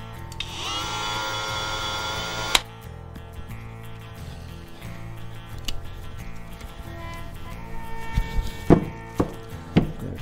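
A cordless brushless oscillating multi-tool's motor whines at a steady pitch for about two seconds near the start, spinning up briefly, then cuts off with a sharp click. Several knocks follow near the end as the tool and its battery are handled, over background music.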